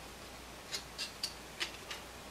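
Faint clicks and light scrapes of hard plastic model-kit parts being fitted together by hand as a dry fit. About five small ticks come in the second half.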